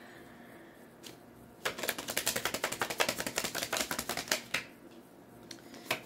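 A deck of tarot cards being shuffled by hand: a rapid, dense run of card clicks starting about a second and a half in and lasting about three seconds.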